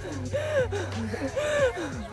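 Women laughing, in short irregular bursts of pitched vocal sound.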